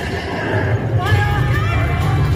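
A horse whinny from the show's soundtrack is heard about a second in, rising and falling in pitch. It sits over a loud, steady low rumble.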